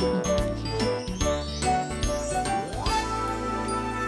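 Bright instrumental transition music with chiming, bell-like notes over a bass line; a quick upward sweep in pitch comes just before the end.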